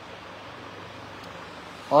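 Steady, even background hiss with no distinct events, then a man's voice starts right at the end.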